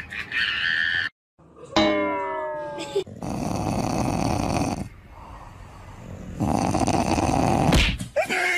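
A dog making long, rough, raspy vocal noises, somewhere between a growl and a snore. There are two loud stretches with a quieter one between them, and they follow a brief call that falls in pitch.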